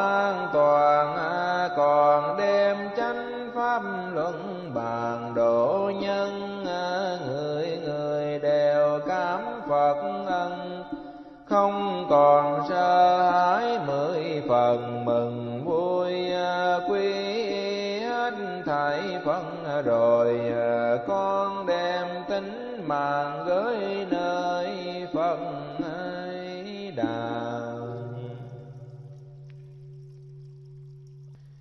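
Vietnamese Buddhist devotional music: a gliding melodic line over a low sustained accompaniment. It breaks off briefly about eleven seconds in, then fades out near the end into a low held tone.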